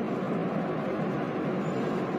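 Steady background noise with a faint constant hum, unchanging throughout.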